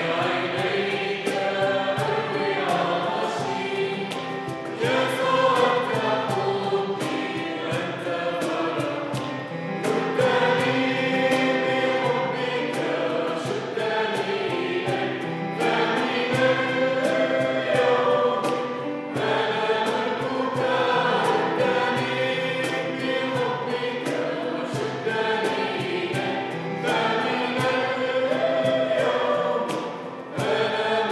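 A small choir, mostly women's voices, singing a hymn in sustained phrases that break briefly every few seconds.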